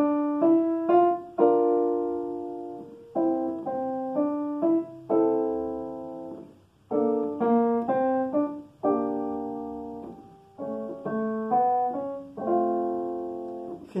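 Digital piano playing a short jazz example: the melody harmonized in chords with the right hand while the left hand plays bass notes. The chords come in short phrases, several left to ring and fade.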